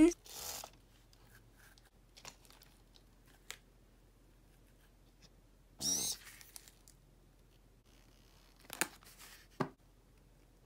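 Mostly quiet, with scattered short rustles and clicks as a homemade cardboard, craft-stick and duct-tape grabber arm is worked. The loudest is a brief rustle about six seconds in, and two sharp clicks come near the end.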